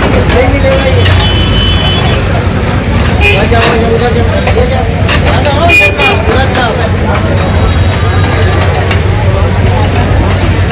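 Busy street-food stall ambience: a loud babble of voices and traffic over a steady low hum, with repeated sharp clicks of metal kabab skewers being handled and turned on a charcoal grill.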